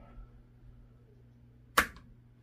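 AR-15 hammer snapping forward as the trigger breaks under a digital trigger pull gauge: a single sharp click near the end. The gauge reads about 2 lb 15.4 oz on this pull, on a trigger lightened with a reduced-power spring kit.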